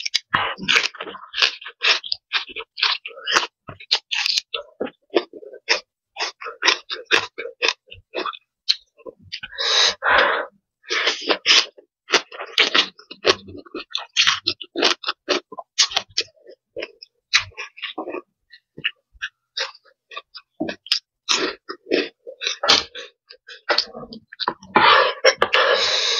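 Close chewing and crunching of raw vegetable stems and noodles: a quick, uneven run of many short, crisp crunches.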